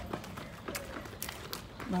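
Footsteps on a concrete sidewalk while walking, a run of uneven taps, with a voice starting right at the end.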